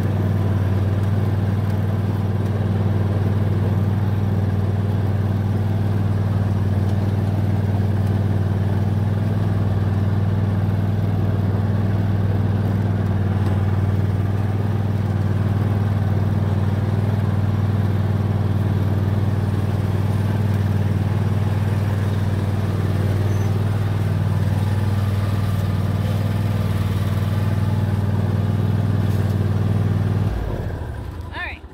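Riding lawn tractor engine running steadily under way at a constant throttle, a continuous low drone.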